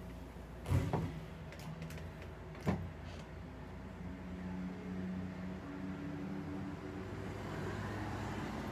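An interior door being shut: a knock as it meets the frame about a second in, then a sharp click a couple of seconds later. A low, steady hum follows.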